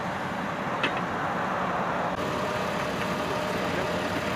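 Ford Cargo garbage truck's diesel engine running steadily, with one small click about a second in.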